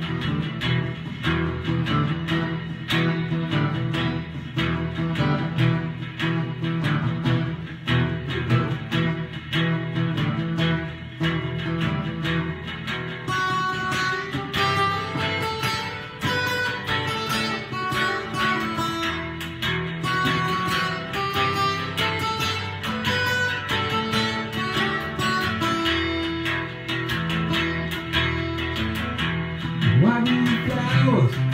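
Two guitars playing an instrumental song intro: steady strummed chords, joined about halfway through by a picked melody line of single higher notes.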